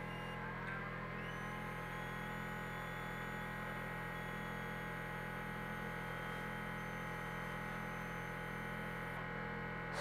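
Ozone therapy device running after being started at 70 µg, a steady electrical hum with a higher whine that rises in pitch about a second in and then holds steady.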